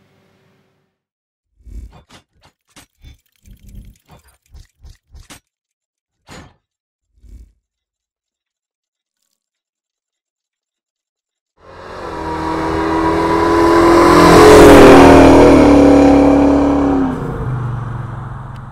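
A car driving past: its engine swells to a loud peak and fades away, the pitch dropping as it goes by.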